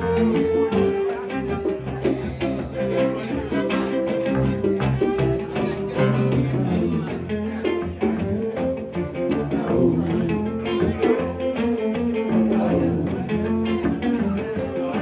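Fiddle playing long bowed notes over a strummed acoustic guitar keeping a steady rhythm, an instrumental passage of a song.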